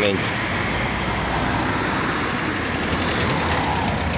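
Road traffic on a street: a steady rush of passing cars' tyres and engines.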